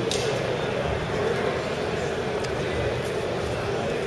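Steady hubbub of many people talking at once in a large hall.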